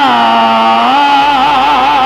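Male Pala singer holding one long sung note into a microphone without words, the pitch stepping up slightly about a second in and then wavering with vibrato.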